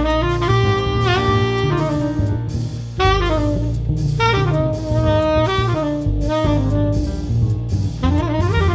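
Tenor saxophone playing long held notes with small pitch bends in a free-jazz improvisation, a new phrase starting sharply about three seconds in.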